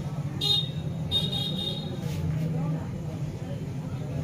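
Street traffic with two short, high-pitched vehicle horn toots, a brief one about half a second in and a longer one from about one to nearly two seconds, over a steady low traffic hum.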